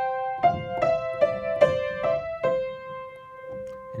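Piano playing a slow melody phrase in the middle register, single notes mixed with two-note chords, about six notes in the first two and a half seconds. The last note is held and left to ring, fading slowly.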